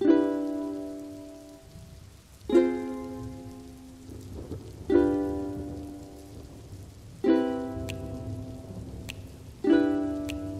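Ukulele strumming single chords, five of them about two and a half seconds apart, each left to ring out and fade, over a steady rain sound effect.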